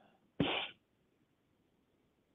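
A person's single short, sharp burst of breath noise into the microphone, about half a second in, followed by near silence.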